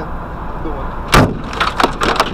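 Steady road and engine noise inside a moving car, then a loud, sharp bang about a second in as a chunk of ice thrown off a box van's roof hits the car, followed by a few smaller knocks of ice fragments striking the body and glass.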